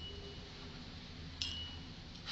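Two light metallic clinks, each followed by a brief high ringing tone: one at the start and a sharper one about one and a half seconds in, over a faint low hum.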